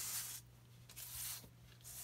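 A paper scratch-off lottery ticket swept by hand across a countertop: a brief papery swish at the start, then a softer rub and a light tick about a second and a half in.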